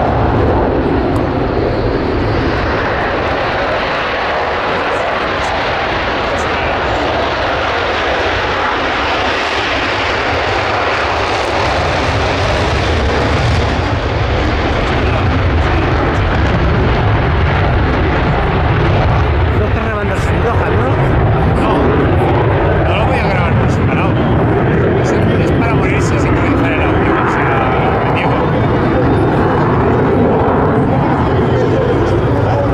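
Jet noise from a Sukhoi Su-57 twin-engine fighter in flight: a loud, steady rushing roar that holds for the whole stretch.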